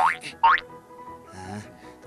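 Two quick cartoon sound effects, each a whistle-like tone rising steeply in pitch, about half a second apart, followed by quiet background music.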